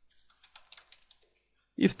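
Computer keyboard typing: a quick run of faint keystrokes in the first second or so as digits of an IP address are entered, then a pause. A man starts speaking near the end.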